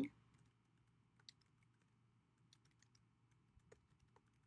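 Faint, scattered keystroke clicks of typing on a computer keyboard.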